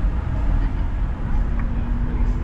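Steady low rumble of a car driving on a city street: engine and tyre noise, with no sudden events.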